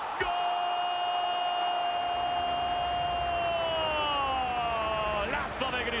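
A Spanish-language TV football commentator's drawn-out shout at a goal, held on one note for about three seconds and then falling in pitch, over a stadium crowd cheering.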